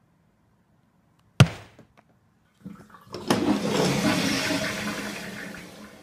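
A sharp knock about a second and a half in, then a push-button toilet flush: water rushes loudly through the bowl and slowly tapers off near the end.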